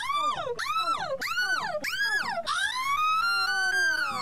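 A wailing, siren-like tone: four quick swoops, each rising then falling, followed by one long slow rise that starts to fall away near the end.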